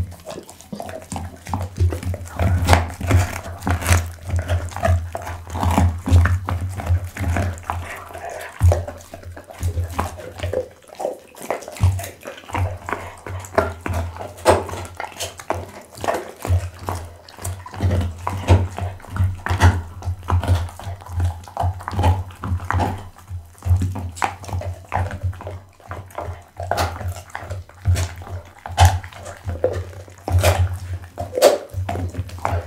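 Pit bull chewing and crunching a raw lamb backbone close to the microphone: fast, irregular wet bites and bone cracks, with a low rumble coming and going underneath.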